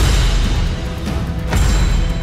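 Dramatic orchestral trailer music with a heavy low end and two loud sudden hits, one at the start and another about a second and a half in.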